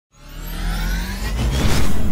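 A riser sound effect for a logo intro: a swelling whoosh with tones gliding upward over a low rumble, growing louder through the two seconds.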